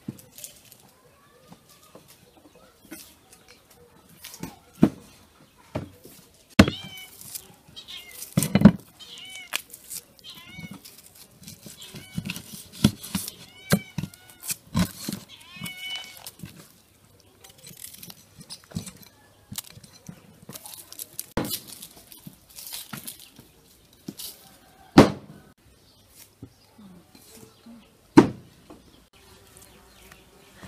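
Raw chicken being chopped with a cleaver on a wooden cutting board: irregular heavy chops, a few of them much louder than the rest. A cat meows repeatedly, mostly in the first half.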